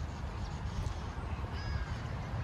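Outdoor wind rumbling on the microphone, with a short faint bird call near the end.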